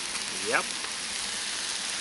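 Meat, beetroot and chickpeas frying in a pan on a rocket stove: a steady sizzle.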